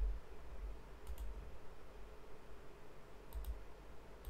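Computer mouse clicking: a quick double click about a second in and another pair near the end, over a low rumble.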